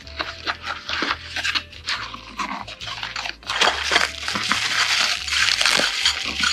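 Crinkly packaging being handled by hand: a cardboard box is opened, then a bubble-wrap bag holding the metal horse pieces is crinkled. The crinkling gets louder and denser over the second half.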